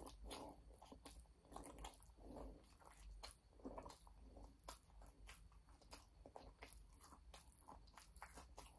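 Faint, close chewing and crunching of fried takeout food, with many small clicks from the mouth and a few soft mouth noises.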